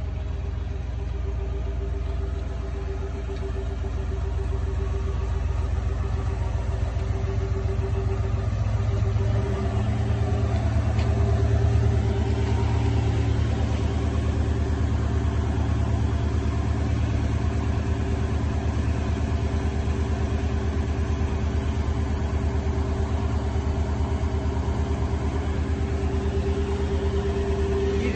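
Porsche 928's V8 idling steadily. About nine seconds in, its note shifts and it runs a little louder after that.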